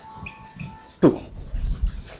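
Dry-erase marker squeaking in short high-pitched chirps as it writes on a whiteboard, with one spoken word about a second in.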